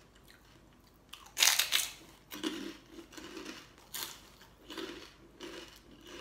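A bite into crispy Thai pork crackling (khaep mu), a loud crunch about a second and a half in, followed by repeated crunching as it is chewed.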